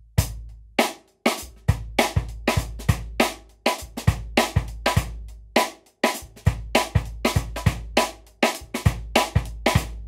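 Drum kit played in a steady syncopated groove: quick hi-hat strokes over snare backbeats and bass drum kicks, on Bosphorus cymbals.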